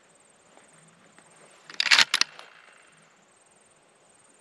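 A brief cluster of sharp clacks about two seconds in, over a faint steady chirr of insects.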